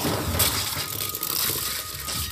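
Animated sound effects: a hissing burst of smoke from a smoke bomb, swelling about half a second in, with small metallic rattling like a metal canister on a hard floor.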